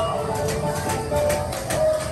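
Shooting-gallery rifles being fired at the targets: a quick, irregular run of sharp cracks, several a second.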